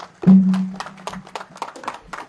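Hand clapping from a gathering as a speech ends, a string of separate sharp claps. About a quarter second in, a loud held low musical note sounds for about half a second.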